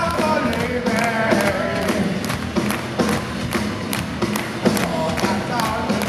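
A hard rock band playing live, with electric guitar and drums, and the crowd clapping along close to the microphone.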